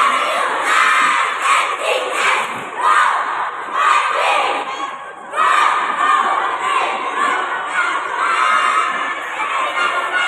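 Young cheerleaders shouting a cheer with an audience cheering. The shouting comes in rhythmic bursts at first, drops briefly about five seconds in, then carries on more steadily as the squad goes into its stunts.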